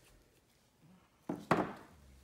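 Two quick knocks on a hard surface about a second and a half in, a quarter-second apart, the second louder, like an object set down on a work table.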